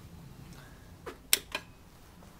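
Three sharp clicks in quick succession a little past a second in, the middle one much the loudest.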